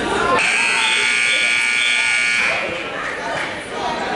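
Scoreboard buzzer in a wrestling gym sounding once, a steady harsh buzz of about two seconds that starts suddenly about half a second in, over voices and chatter.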